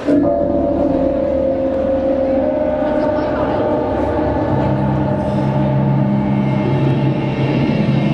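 Backing music for a dance routine cutting in suddenly with a loud, long held chord. About halfway through, a deep bass note joins it.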